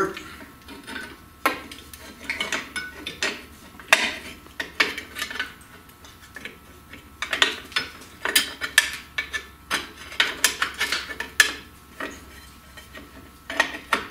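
Steel brake shoes and their return springs on an MGB's rear drum brake clinking and scraping against the backing plate as they are worked into place by hand. The clinks and rattles come irregularly and are busiest past the middle.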